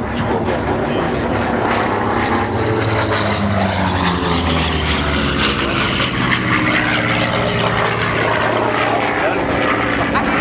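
Single-engine piston warbird flying by, its engine and propeller making a steady loud drone whose pitch falls a few seconds in as it passes.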